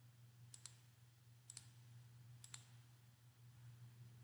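Three faint double clicks of a computer mouse, about a second apart, over a faint steady low hum.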